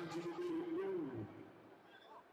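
A voice holding one long drawn-out call that wavers slightly, then falls away and stops a little over a second in, leaving the quieter murmur of a large hall.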